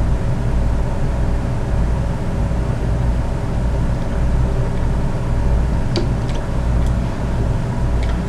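Steady mechanical hum of a hotel-room air conditioning unit running, with a low drone and several steady tones. A couple of faint clicks about six seconds in.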